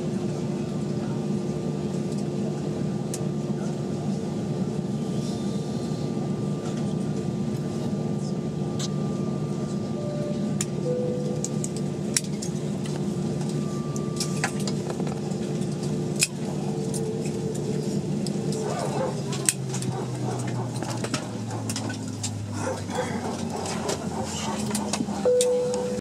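Airliner cabin noise in an Airbus A320 taxiing slowly: the steady hum of the engines at idle and the air systems, with a thin whining tone over it. Scattered sharp clicks come in the second half, and after about twenty seconds the hum changes and drops lower.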